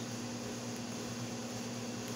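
A steady low hum with an even hiss under it, unchanging throughout, with no distinct event.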